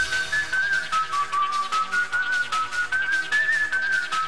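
Bounce-style electronic dance track: a high, whistle-like lead melody stepping up and down over a steady beat.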